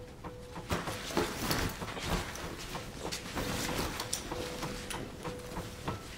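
Rustling and irregular clicks and knocks of a loaded bag and its straps being handled and fitted onto a person's back. A faint steady hum comes and goes under it.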